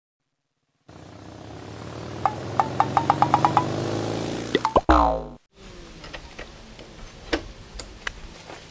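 An edited transition sound effect: a rising swell with a quick run of ticks, ending in a falling, boing-like sweep that cuts off abruptly about five seconds in. Faint outdoor ambience with a few clicks follows.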